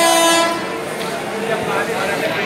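An approaching train's horn sounding one short, bright blast of about half a second, with voices on the platform around it.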